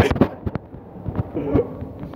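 Irregular knocks and thumps from people hurrying down a moving escalator, footsteps on the metal treads mixed with knocks from the handheld phone, with a brief snatch of voices in between.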